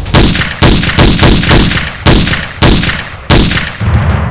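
A string of about eight pistol shots fired into the air at an irregular pace, roughly two a second. Each shot is sharp and loud and leaves a long fading echo before the next.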